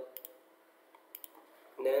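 A handful of light, sharp clicks from computer keys and a mouse as text is edited, spaced unevenly.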